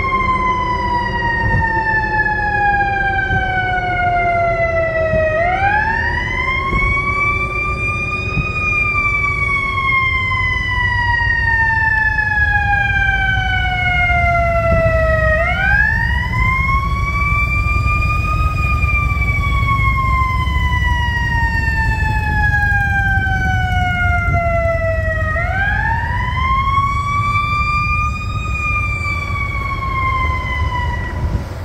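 Emergency vehicle siren in a slow wail: each cycle climbs in about three seconds, then slides down slowly for about seven, three times over. A low rumble of vehicles moving past runs underneath.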